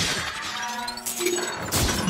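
Film action sound effects of crashing, shattering debris, with two heavy impacts: one about a second in and a louder one near the end.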